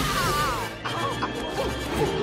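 Animated-film soundtrack: music over sound effects with a crash, from a chase.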